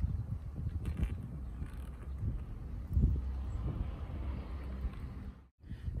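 Wind rumbling on the microphone, with faint knocks and rustles as a full-face motorcycle helmet is pulled down over the head. The sound drops out briefly near the end.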